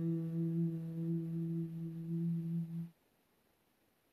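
A woman's voice holding one long, low hummed note that wavers slightly in loudness and cuts off sharply about three seconds in.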